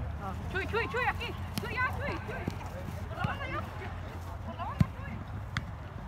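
Distant voices of several people calling out over a steady low rumble, with one sharp knock close to five seconds in.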